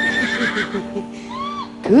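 Horse-whinny sound effect played with the dangdut band: a high, wavering neigh that falls away, then a shorter second neigh about a second and a half in, while the band's held notes fade. The singer's voice and the band come back in loudly at the very end.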